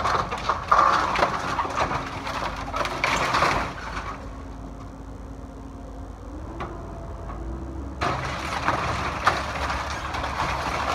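Cat 308E2 mini excavator's diesel engine running while its bucket and thumb crunch and scrape through broken wooden boards and metal roofing, with many sharp cracks and clatters. The crunching drops away for a few seconds in the middle, leaving the engine, which rises in pitch, then starts again near the end.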